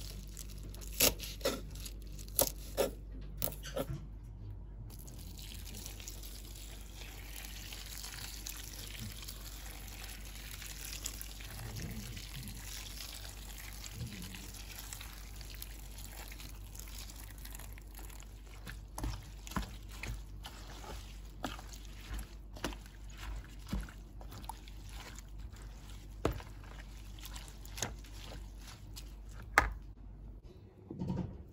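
A knife chops leaves on a wooden board in a few sharp strokes. Then a stream of water pours over chopped dock leaves in a bowl, a steady rush lasting about ten seconds, followed by scattered clicks and knocks of handling.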